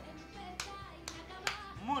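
Faint background music, with three sharp taps from kitchen work at the counter about half a second, one second and a second and a half in.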